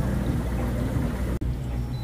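Steady low hum and rumble of the aquarium shop's running equipment, such as tank pumps and filters, with a momentary dropout about one and a half seconds in.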